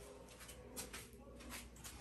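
Quiet room tone with a low hum and a few faint clicks.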